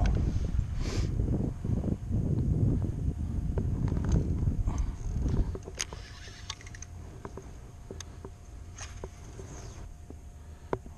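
Low rumbling handling noise with knocks for the first five seconds or so, then quieter, with a few sharp separate clicks as a baitcasting reel is handled.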